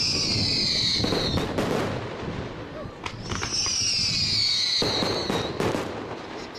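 Fireworks: two whistling rockets, each a whistle falling in pitch for about two seconds, the second starting about three seconds in, among sharp bangs and crackling.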